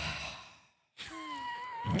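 A person sighing into a close microphone: a breathy exhale that fades out, a moment of dead silence, then a drawn-out voiced sigh held on one pitch.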